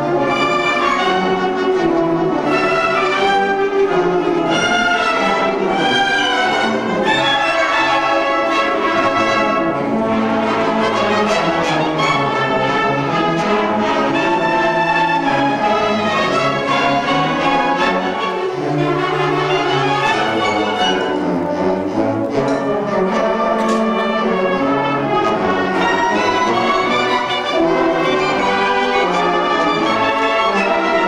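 Large massed youth concert band, with clarinets, saxophones and brass, playing a piece through in rehearsal. The full ensemble holds loud, sustained chords, with a few sharp percussion strokes partway through.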